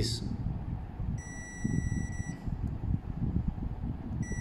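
A digital multimeter's continuity beeper sounds one steady high-pitched beep lasting about a second as its probes bridge two pins of a spindle motor's connector, signalling a low-resistance path through the motor winding. A low, uneven rumble of handling runs underneath.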